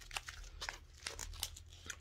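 Plastic pouch of soy wax melt sprinkles crinkling as it is handled and moved, a quick run of small irregular crackles.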